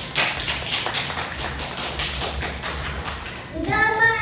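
Audience clapping: a dense run of sharp claps that dies away shortly before a child's singing voice comes in near the end.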